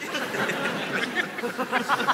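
Theatre audience laughing and chuckling, many voices overlapping.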